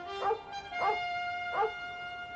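A collie barking three times, short sharp barks about two-thirds of a second apart, over orchestral film music with long held notes.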